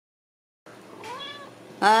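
Ragdoll kitten meowing once, a short high call, while it paws at the wire pen it has just been put back in and doesn't like.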